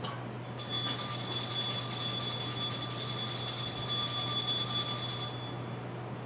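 Altar bells shaken in one continuous high, shimmering ring for about five seconds, marking the elevation of the host at the consecration. The ringing starts about half a second in and stops shortly before the end.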